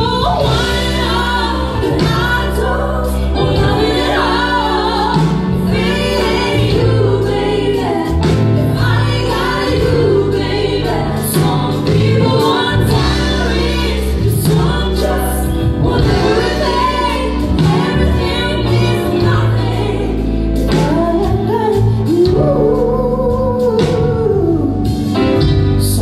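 Live band performance: a woman sings lead, and three women sing backing vocals over keyboard, bass guitar and drums.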